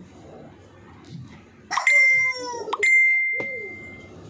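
Two bell-like metallic dings about a second apart. Each is a sharp strike followed by a clear ringing tone, and the second rings on for about a second before fading.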